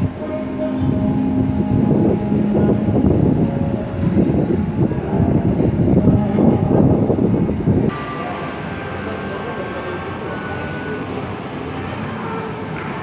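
Vehicle engines and road traffic rumbling loudly, with steady low engine tones. About eight seconds in this cuts off suddenly and a quieter steady background takes its place.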